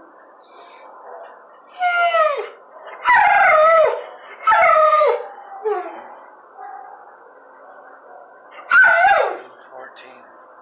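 A dog in a shelter kennel giving a series of loud howling barks, each call sliding down in pitch. There are about five in all, the last near the end.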